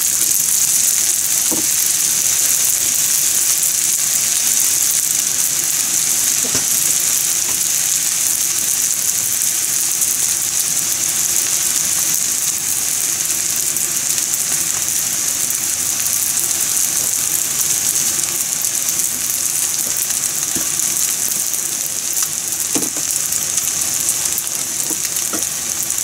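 Fried rice sizzling steadily in a frying pan on a gas stove, with a few faint knocks now and then.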